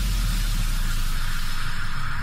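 Electronic sound effect in an intro mix: a steady hiss of noise, like static, over a deep bass drone.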